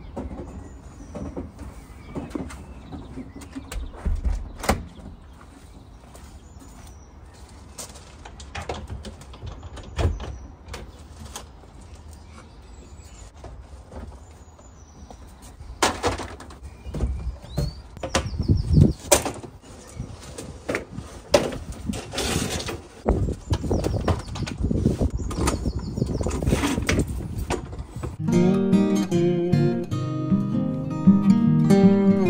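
Wind buffeting the microphone with faint bird chirps, then a busy run of knocks and rattles as garden things are shifted in a wooden shed and a lawnmower is pulled out. Acoustic guitar music comes in near the end.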